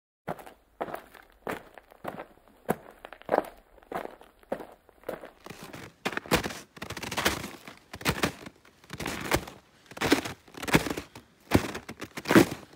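Footsteps crunching in snow as a person walks uphill, steady and even at about three steps every two seconds.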